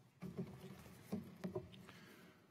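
Faint, irregular knocks and rustles: handling noise picked up by a lectern microphone.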